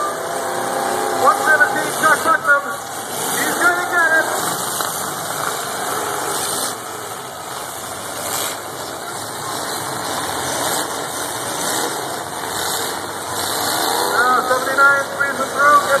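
Engines of many demolition derby cars running together, a steady loud din from the arena.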